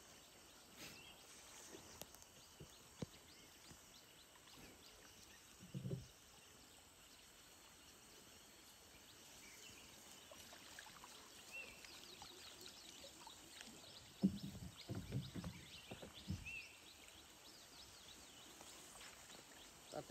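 Faint river ambience: water sloshing around a person wading waist-deep, with a short run of louder low splashes about three-quarters of the way in and a few faint high bird chirps.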